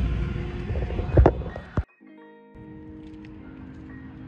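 Low rumbling handling noise on a handheld phone microphone with a bump about a second in, cut off suddenly near the middle. After the cut, background music with sustained held notes plays at a lower level.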